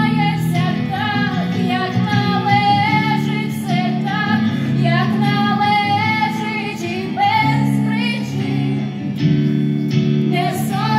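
Live band music: a woman sings long held notes that bend and waver, over steady guitar chords, amplified through a concert PA.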